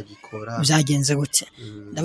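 Speech: a man talking with a pitched, sing-song intonation that rises about half a second in. There is a short pause near the end.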